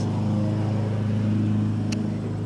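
Steady low drone of a lawn mower engine running in the background, with a brief click near the end.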